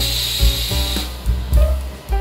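A hat blocking machine's press closing, with a hiss that lasts about a second as it starts, over background music with a steady beat.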